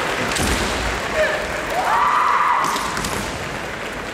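Kendo competitors' kiai: a short cry, then a long drawn-out shout that rises and is held for about a second. A few thuds, from stamping feet or shinai strikes, fall around it.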